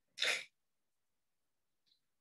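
A single short, breathy burst from a person, about a third of a second long, just after the start, then silence.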